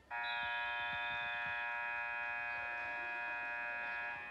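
Gym scoreboard buzzer sounding one steady blast of about four seconds that starts suddenly, marking the end of a wrestling period.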